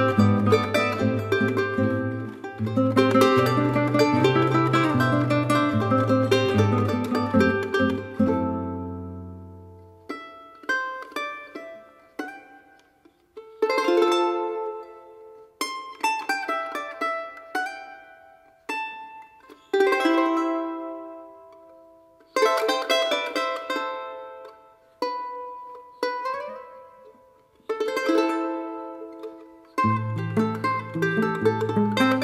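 Instrumental charango music. For the first eight seconds or so the charango is played over a guitar's bass line; then the charango goes on alone in short plucked phrases and chords that ring out and stop, with brief pauses between them.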